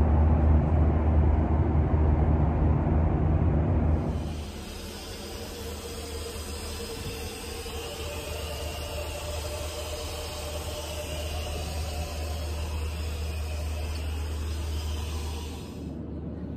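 Cabin noise of a Boeing 737-800 in flight: the steady drone of engines and airflow, deep and loud at first, then about four seconds in it drops abruptly to a quieter, hissier sound with faint steady tones.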